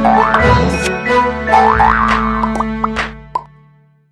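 Closing logo jingle: music with cartoon-style sound effects that glide quickly up in pitch, among sharp ticks, fading out over the last second or so.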